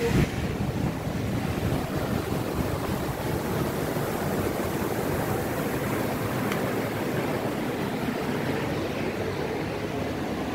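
Ocean wave surging into a sea cave, seawater rushing and washing across the sandy cave floor in a steady rush. There is a brief knock at the very start.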